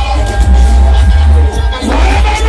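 Loud live music played over a concert PA system, with heavy bass and held synth tones that stop about a second and a half in, mixed with crowd noise.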